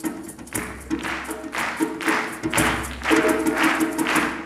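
Live hand-drum percussion playing a steady beat of about two strokes a second, with a rattling top and a low held tone beneath, in an instrumental break of the song with no singing.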